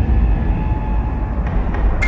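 Loud, deep rumbling sound effect under a TV news programme's animated title sting, starting suddenly just before and holding steady, with a brighter hit at the very end.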